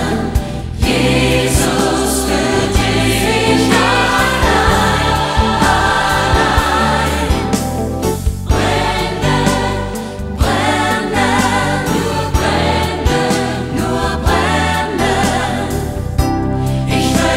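A studio choir sings a slow Christian Christmas song over sustained instrumental backing. The singing comes in phrases with short breaks between them.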